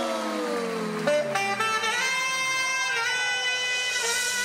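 Saxophone played unaccompanied: a line gliding down in pitch that ends about a second in, then a new phrase of a few long held notes.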